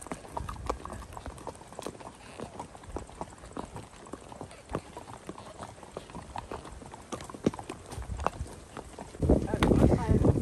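Horses' hooves walking on a dirt trail: an irregular clip-clop of several horses at a walk. About nine seconds in, a louder low rushing noise sets in over the hoofbeats.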